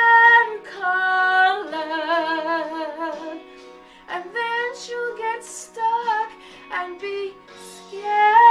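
A woman singing a slow ballad, long held notes with vibrato, over faint, steady low accompaniment; her voice dips briefly about halfway through and comes back in shorter phrases.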